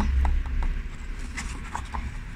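A few light, scattered clicks and taps of plastic as a paper lantern's plastic bulb holder is handled, over a steady low rumble.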